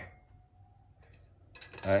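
A man speaking Vietnamese briefly at the start and again near the end, with about a second of near silence between.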